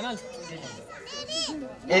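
Children's voices in the background, with a high-pitched child's call that rises and falls about halfway through.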